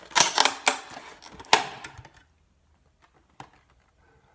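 Clear plastic clamshell food container being opened: a quick run of sharp clicks and crackles from the thin plastic lid in the first two seconds, and one faint click near the end.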